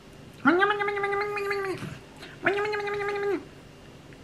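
A small dog howling: two long, steady howls, the first about a second and a half, the second shorter, each rising in at the start and dropping off at the end.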